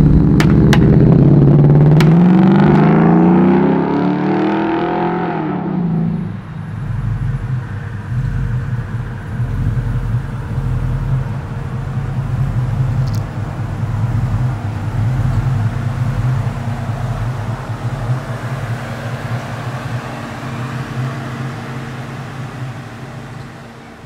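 A 1965 Ford Mustang fastback's engine accelerating, its note rising steadily in pitch for about six seconds. It then drops back to a steadier, lower running note that slowly fades.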